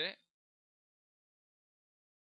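Near silence: the end of a spoken word in the first moment, then dead silence.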